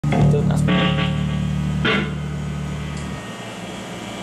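Electric bass holding a low note, with an electric guitar chord ringing over it and a fresh strum about two seconds in; the bass note cuts off a little after three seconds, leaving the guitar to fade.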